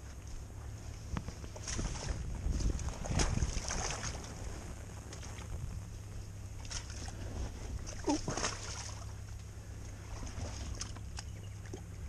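Boots splashing and sloshing through shallow muddy water beside a bogged motorcycle, in irregular bursts, loudest a couple of seconds in and again about eight seconds in, over a steady low rumble.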